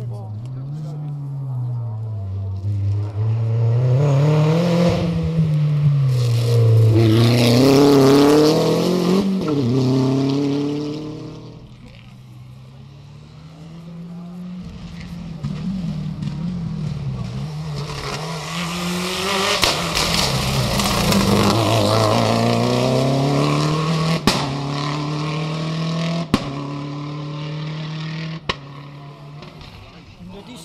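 Rally car engines working hard on a special stage, the revs rising and falling again and again through gear changes as one car passes and fades, then a second comes through. A couple of sharp cracks ring out late in the second pass.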